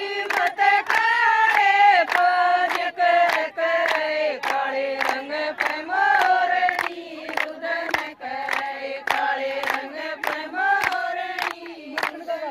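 Women singing a Haryanvi folk song together, with steady rhythmic hand-clapping at about three claps a second.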